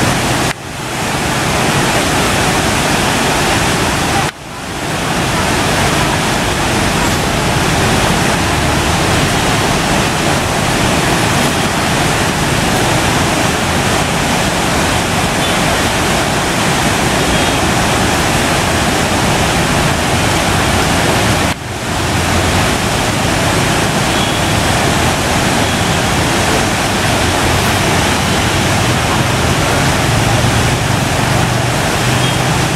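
Steady, loud rush of the flooded Narayani River's muddy water churning past the bridge piers. The rushing cuts out briefly three times and swells back.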